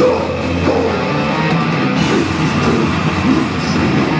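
Live heavy metal band playing loud and dense: distorted electric guitar, bass guitar and drum kit, with the vocalist's harsh vocals shouted over them into the microphone.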